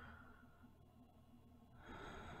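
Faint, slow breathing of a woman close to the microphone: one breath fades out in the first second, and the next begins near the end.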